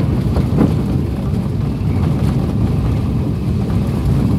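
Steady low rumble of a vehicle driving on a paved road, heard from inside the cab: engine and tyre noise, with a brief knock about half a second in.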